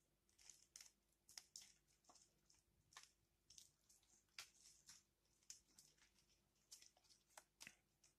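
Faint, irregular crackling and tearing of moist potting soil and fine roots as a root ball of Arabica coffee seedlings is pulled apart by hand.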